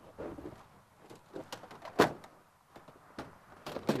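Polished aluminum solar cooker reflector panel being opened out from its folded state: a string of light clicks and knocks as the sheets shift and hit the table, with one sharp knock about halfway through.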